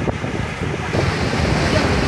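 Wind buffeting the microphone over the rush of water and low rumble of a river passenger launch under way, a little louder about a second in.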